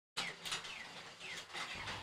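Faint background with a few short, falling chirps, most likely birds, after a split second of dead silence.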